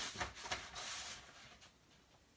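A sheet of patterned paper rustling and sliding over a paper trimmer's base as it is positioned against the rail, with a couple of light taps at the start. The rustle fades out after about a second and a half.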